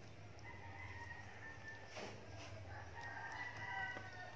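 A rooster crowing faintly, drawn-out high calls that grow stronger toward the end.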